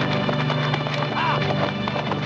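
A horse galloping, its hoofbeats a fast run of ticks under film-score music with long held notes. A short call rises and falls a little past the middle.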